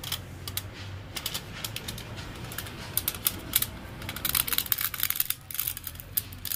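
Plastic blister tray and foil pouch crinkling and clicking as they are handled, with a dense run of crackles from about three to five seconds in.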